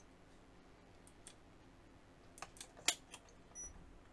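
Faint, sharp clicks from a Powerfix digital multimeter's rotary selector switch being turned: a pair about a second in, then a quicker cluster of four between two and a half and three seconds in. A faint, short, high-pitched tone follows near the end.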